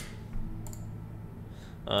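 A couple of light computer clicks over a low steady hum, at a desk while coding, with a spoken "uh" starting right at the end.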